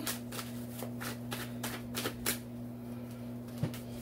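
A tarot deck being shuffled by hand: a quick run of papery card clicks that eases off about halfway, with a single soft thump near the end.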